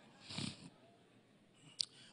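A man's breath drawn in close to a handheld microphone in the first half-second, then near silence, and a short mouth click just before he speaks again.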